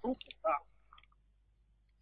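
The end of a spoken phrase and one short syllable about half a second in, then a pause that is nearly silent apart from a few faint clicks.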